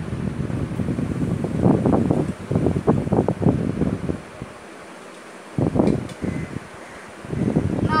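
Marker and plastic ruler working against a whiteboard as lines are drawn: irregular rubbing and knocking strokes, stopping for a moment about halfway through, then resuming briefly twice.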